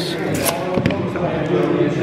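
Dice being rolled onto a gaming table: a quick run of sharp clattering clicks, with voices chattering in the room behind.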